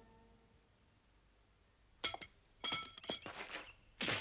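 Swords clashing: a quick run of about five or six ringing metallic clinks, starting about two seconds in, after background music fades out in the first half-second.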